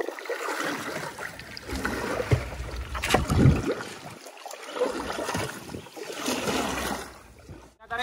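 Wooden paddle stroking through shallow swamp water from a small boat, splashing with each stroke, roughly one stroke every second or two.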